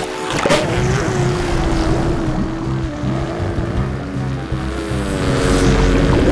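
Cartoon sound effect of a rubber balloon losing its air: a sudden rush about half a second in, then a long wavering squeal as air escapes and the balloon deflates, over background music.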